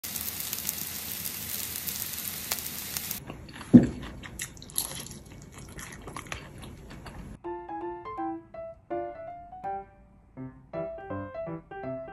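Oil sizzling and crackling under spring cabbage pancakes frying in a pan for about three seconds, then a thump and crisp crunching of the fried pancake. Light electric-piano music starts about halfway through.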